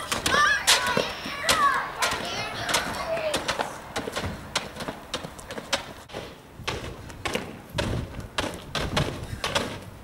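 Rubber space hoppers bouncing on pavement, a run of short irregular thuds, with children's voices calling out in the first few seconds.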